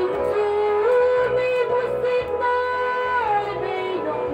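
A woman singing into a microphone over instrumental accompaniment, holding long notes and sliding smoothly between them.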